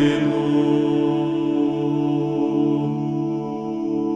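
A Ukrainian folk-style song, with a singer holding one long, steady note between sung lines.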